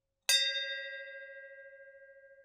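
Chime of a subscribe button's notification-bell sound effect: one bell-like strike about a quarter second in, ringing on and slowly fading.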